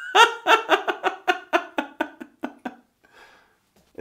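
A man laughing heartily: a run of about a dozen short, pitched 'ha' pulses, roughly four a second, that fade out over nearly three seconds, followed by a faint breath.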